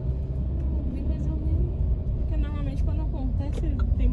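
Steady low rumble of a car's engine and tyres heard from inside the cabin while driving slowly in traffic, with voices talking low in the car.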